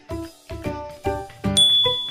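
Background music with a steady beat, about two beats a second. About three-quarters of the way in, a single bright bell-like ding sound effect comes in and keeps ringing.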